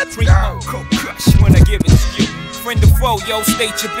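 A hip hop track with a rapper over a heavy kick-drum beat, played out through the DJ's turntables and mixer.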